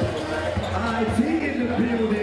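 Basketballs bouncing on a hardwood gym floor, repeated low thumps, with voices talking over them.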